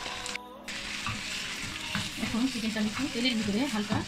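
Raw chicken drumsticks sizzling in hot oil in a nonstick frying pan, with a wooden spatula stirring them near the end.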